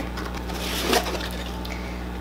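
Cardboard subscription box being worked open, its seal broken and the lid pulled up: soft rustling and scraping of cardboard and paper, with a brief louder rustle about halfway through.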